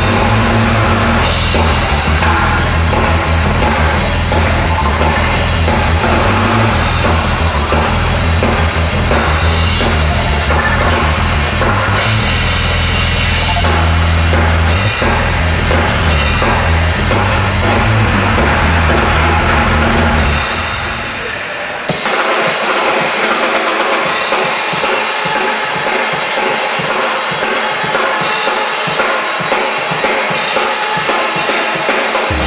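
Pearl drum kit playing a driving rock beat with kick, snare and cymbals over a deep bass line. About 21 seconds in the deep bass drops away; from about 22 seconds the drums carry on over a thinner backing.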